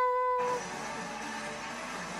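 A drawn-out vocal note that has just swept up in pitch, held steady and ending about half a second in, followed by a steady background hiss.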